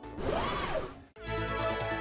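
A short whoosh transition effect rising and falling in pitch, then a brief break about a second in. After it the show's outro theme music starts with held chords.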